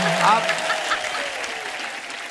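Studio audience laughing and applauding, with a few laughing voices near the start, dying away over the two seconds.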